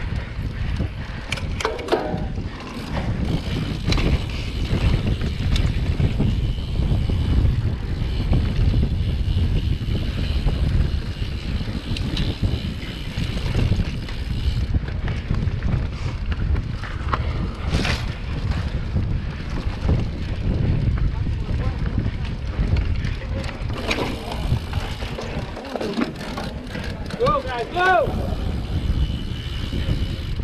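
Wind buffeting an action camera's microphone over the rumble of mountain-bike tyres on a dirt singletrack, with scattered rattles and knocks from the bike over roots and bumps.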